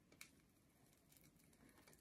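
Near silence, with one faint soft click about a fifth of a second in and a few fainter ticks later, from the plastic transfer carrier sheet being handled.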